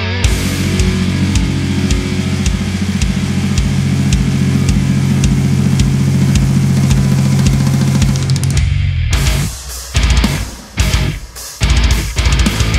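Heavy metal played on a very low-tuned electric guitar, tuned to eight-string standard, through a high-gain amp with drums: a long run of low chugging over a steady pulsing kick drum. About three-quarters of the way through it breaks into short stop-start stabs with brief gaps between them.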